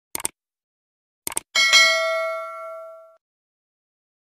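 Subscribe-button animation sound effect: two quick clicks, another quick pair about a second later, then a single bright bell ding that rings out and fades over about a second and a half.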